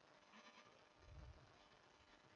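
Near silence: room tone, with a faint low sound a little over a second in.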